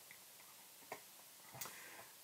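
Near silence: room tone, with a single faint click just before a second in.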